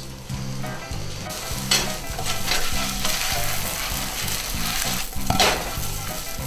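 Meat and eggs frying in oil in a skillet, a steady loud sizzle, with a spatula stirring in the pan.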